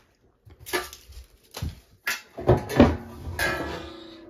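Items being handled in a kitchen drawer as a plastic drawer organizer is emptied: a few clattering knocks, loudest between two and three seconds in, then a scraping rattle near the end.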